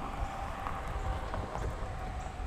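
Quiet roadside ambience: a low rumble underneath, a faint steady hum, and a few light clicks.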